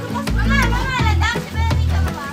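Children's voices as they play, over background music with a steady bass beat.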